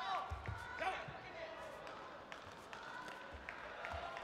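Taekwondo sparring on a competition mat: low thuds of footwork and kicks, with short high-pitched shouts from the fighters in the first second as they exchange kicks.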